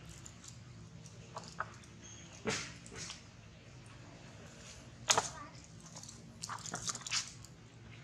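Scattered sharp crackles and clicks of a thin plastic water bottle being handled and bitten by a young macaque, the loudest about five seconds in and a quick cluster near the end, over a low steady hum.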